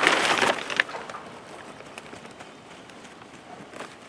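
A hand patting and brushing over loose potting soil, a short rustling scrape in the first half-second and a light click just before the one-second mark, then only a low background with a couple of faint taps near the end.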